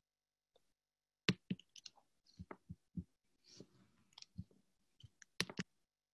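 Faint, irregular clicks and taps on a computer's input devices, about a dozen in all, as the presentation slides are paged back and forth.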